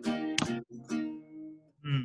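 Acoustic guitar strummed once about half a second in, its chord ringing and dying away. A voice briefly starts up near the end.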